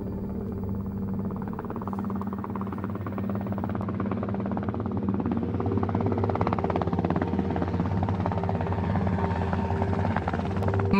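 CH-47 Chinook tandem-rotor helicopter in flight, its rotors beating in a rapid, steady chop over a low engine drone.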